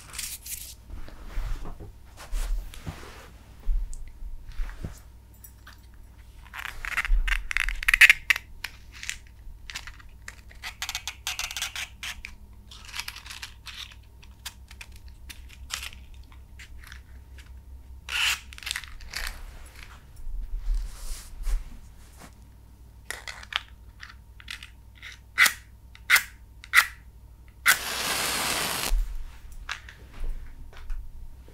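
A box of matches handled close to the microphone: scattered clicks, scratches and short rattling rustles as it is opened and matchsticks are taken out. Near the end comes one longer, louder scrape-and-rush lasting about a second.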